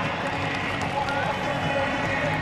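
Stadium crowd din: many voices from the stands blending into a steady roar of talk and cheering.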